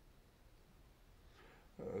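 Near silence: faint room hiss, then a voice starts speaking with a hesitant "euh" near the end.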